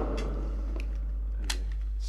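Steady low hum with a few faint clicks and ticks spread through it.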